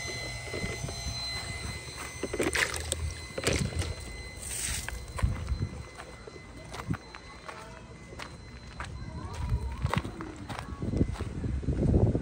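Water sloshing in a plastic bucket carried at a walk, with irregular footsteps on gravel and a few light knocks.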